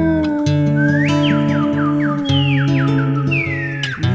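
Instrumental break of a song: steady accompaniment with a held low note under whistled bird calls. A rising whistle comes about a second in, then runs of quick falling whistles, and one long falling whistle near the end.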